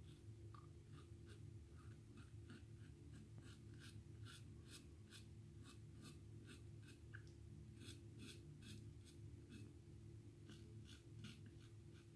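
Safety razor scraping through lathered stubble in short, quick strokes, about three a second, faint over a low steady hum.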